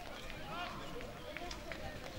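Faint, distant voices calling out in short fragments over steady outdoor background noise, with a few soft clicks.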